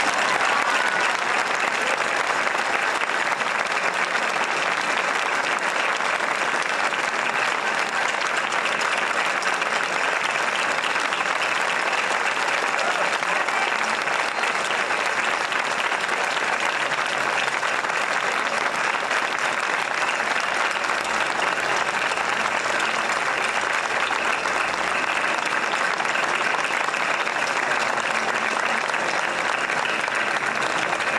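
Large audience applauding steadily, joined by the choir clapping on stage.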